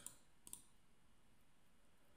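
A single computer mouse click about half a second in, otherwise near silence.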